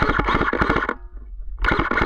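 Airsoft electric rifle firing two full-auto bursts, each a rapid, even rattle of shots. The first lasts about a second, and the second starts near the end.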